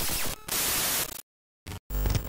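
Glitch sound effect of TV-style static hiss that runs for about a second and cuts off abruptly into dead silence. Two short bursts of static follow near the end.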